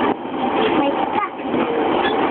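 People talking inside an E231-series commuter train carriage, over the steady running noise of the moving train.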